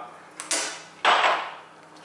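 Kitchen items handled on a counter: two sharp knocks about half a second in, then a rustle of a foil pouch being put down that fades out.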